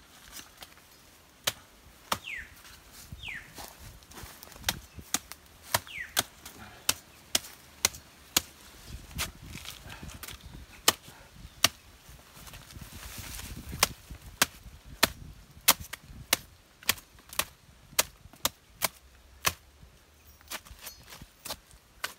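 A machete chopping repeatedly into the fibrous stump of a cut banana stem, a long series of sharp, irregular chops that come faster in the second half, about two a second. The stump's top is being hollowed into a bowl so that rain will collect in it and rot the stem out.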